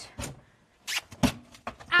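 Goats moving about on a gravel floor: a few short knocks and a brief scuffle of hooves.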